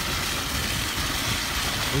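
Pickup truck rolling slowly along a gravel driveway: steady engine and tyre noise, with wind rushing over the microphone.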